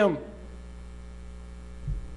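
Steady low electrical mains hum through a pause in speech, with a brief low thump near the end.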